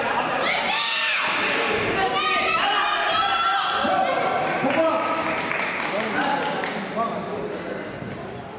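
People shouting in a large, echoing sports hall, with a few thuds from strikes and a fighter falling to the mat.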